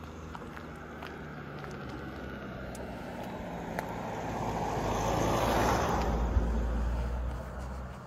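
A car, a silver SUV, driving up the road and past at close range: its engine and tyre noise grow steadily louder, peak about five to six seconds in, then fade.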